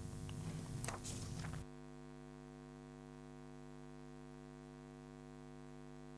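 Steady electrical mains hum in the sound system, at a low, constant level. There is faint background noise with a small click in the first second and a half; after that only the even hum remains.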